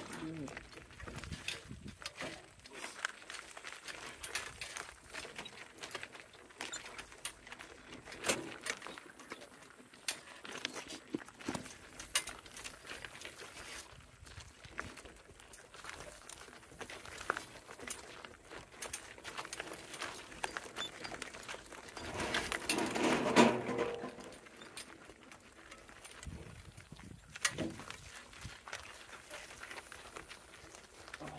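A donkey-drawn wagon rolling along a gravel road, with a scatter of small clicks and rattles from the wagon, its load and the hooves. About two-thirds of the way through comes a brief, louder voice-like sound.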